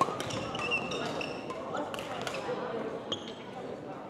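Badminton rally in a gymnasium: a few sharp racket strikes on the shuttlecock and short high squeaks from court shoes on the floor, over the murmur of the hall.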